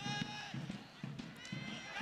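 Live match sound from a soccer field: two high-pitched shouts, one at the start and one near the end, over a low murmur of players' and spectators' voices.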